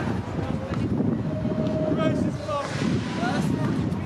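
Street background noise: a low, steady rumble of traffic with wind on the microphone, under scattered indistinct voices.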